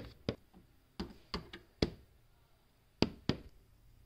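Plastic toy horse figure stepped across a hard floor: sharp knocks, mostly in pairs like hoofbeats, with a pause of about a second after the middle.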